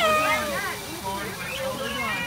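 A young child's high-pitched wordless vocalizing: a loud cry right at the start that slides down in pitch, followed by shorter rising-and-falling calls and another child's voice near the end.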